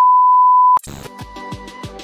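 A loud, steady test-tone beep of the kind played over TV colour bars, held for just under a second and cut off abruptly. It is followed by electronic intro music with quick drum hits.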